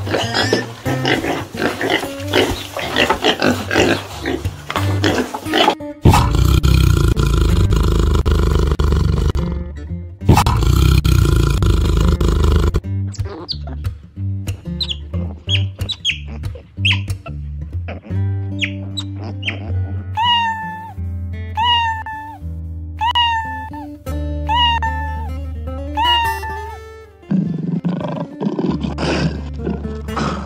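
Animal calls from a string of short clips laid over acoustic guitar music. Piglets are heard at the start, a run of short falling calls about once a second comes in the second half, and a tiger's roar starts near the end.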